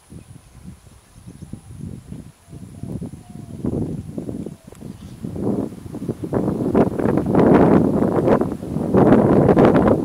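Wind buffeting the microphone in gusts, a rough rumbling noise that builds and is loudest in the second half.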